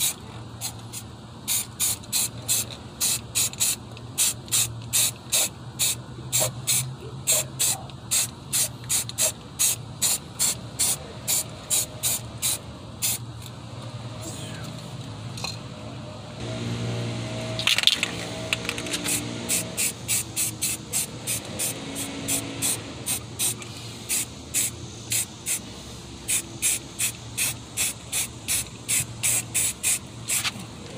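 Aerosol spray can of primer spraying in short, rapid bursts, about two a second, with a pause of a few seconds in the middle before the bursts resume.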